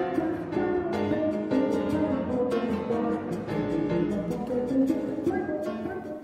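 Jazz played by violin, piano and a six-string fretless electric bass, a steady run of separate plucked notes with several pitches sounding together.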